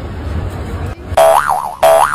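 Cartoon 'boing' sound effect, a wobbling, springy tone played twice in quick succession starting about a second in, over low background music.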